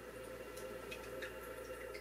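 Quiet room tone with a steady low electrical hum and a few faint, scattered small ticks.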